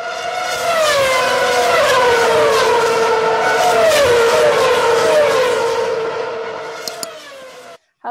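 High-revving Formula 1 car engines passing one after another, each note gliding down in pitch as a car goes by, then fading out near the end.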